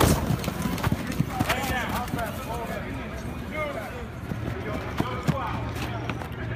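A football lineman hitting a padded blocking shield: one sharp smack at the start, then a few lighter knocks and quick shuffling footsteps on turf, with men's voices in the background.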